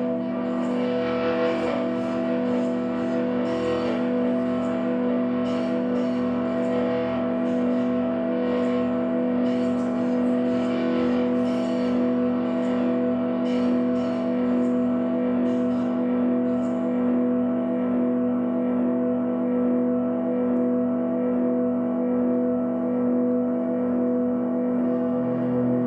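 Live ambient drone music led by electric guitar through effects pedals: held, unchanging chords with a steady pulsing figure under them. The higher, brighter notes above thin out and stop about two-thirds of the way through, leaving the drone.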